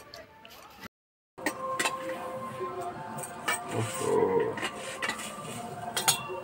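Stainless steel plates and bowls clinking and knocking against each other as food is served, with background music and some voices. The sound drops out completely for a moment about a second in.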